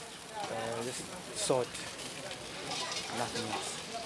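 Quiet speech, a few short phrases, over steady outdoor background noise.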